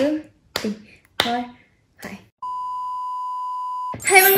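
Four short, sharp sounds, each falling in pitch, come about half a second apart. Then a steady electronic beep starts about two and a half seconds in and holds for about a second and a half before cutting off suddenly.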